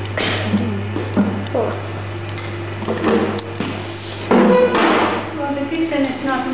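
Indistinct voices and kitchen clatter over a steady low electrical hum. A little over four seconds in, the hum cuts off abruptly at a tape cut, and music with voices follows.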